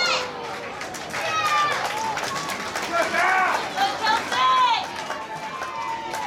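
High-pitched shouts and calls carrying across a football ground, several voices at once, over the general chatter of spectators.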